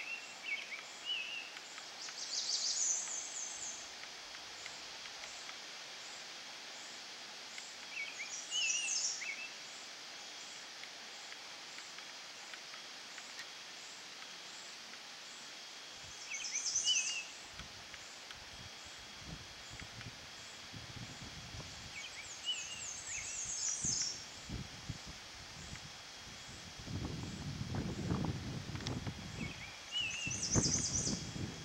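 A songbird singing a short high phrase of quick descending notes about every six seconds, with softer chirps between, over a quiet outdoor background with a faint steady high tone. A low rumbling noise comes in during the second half and is loudest near the end.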